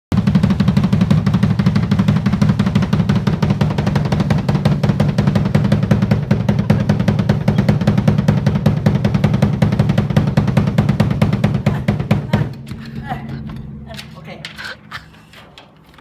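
Fast, unbroken drum roll on an acoustic drum kit, played around the toms, with the drums' low ringing building up under the strokes. About twelve seconds in it stops suddenly, leaving a few scattered strokes and a fading ring.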